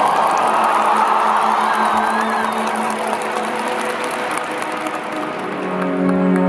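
Arena crowd applauding and cheering over the program music, with a low sustained note held underneath. The applause dies down after about five seconds as the music swells again.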